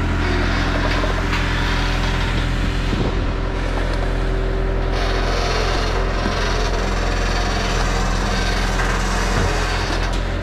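Diesel engine of a Sumitomo long-reach excavator running steadily under load, with a hiss from its hydraulics as the boom swings and the bucket works; the hiss grows brighter about halfway through.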